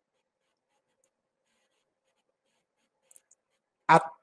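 Near silence during a pause in speech, broken by a couple of faint, brief clicks about three seconds in; a man's voice starts again at the very end.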